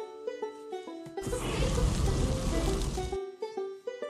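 Background music of quick plucked-string notes in a banjo style. About a second in, a loud rushing noise comes in over it for about two seconds, deepest at the bottom, then cuts off suddenly.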